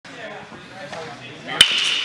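Baseball bat hitting a pitched ball once near the end: a single sharp crack with a short ring after it.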